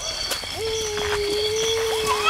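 A child's voice holding one long, steady note for about two seconds, starting about half a second in.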